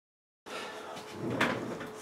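Silence, then the faint sound of a small room comes up about half a second in, with a single brief knock about a second and a half in.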